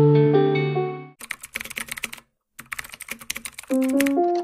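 Background music fades out in the first second, followed by two runs of rapid clicks like typing on a computer keyboard, split by a brief silence. Keyboard or piano music starts near the end.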